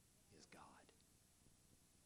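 A man speaking two words very quietly, then near silence: room tone.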